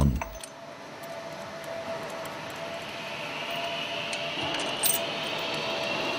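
Light metallic clinks of a lifting tool being bolted onto a large marine diesel's piston crown, with a brighter clink about five seconds in, over a steady background hum.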